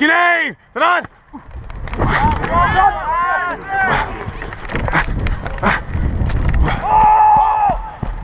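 Football players shouting and whooping, several voices at once, heard through a helmet-mounted camera. Heavy rumbling wind and movement noise on the microphone runs under the shouts, with a few sharp knocks, and one long held shout near the end.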